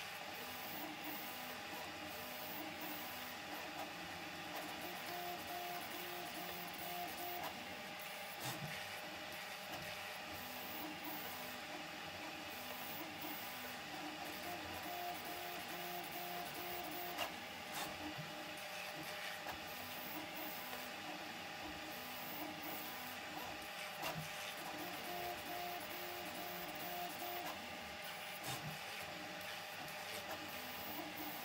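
Stepper motors of a Prusa MK4 3D printer fitted with a pellet extruder, running steadily while the print head moves back and forth laying infill, their pitched whine coming in short repeated runs.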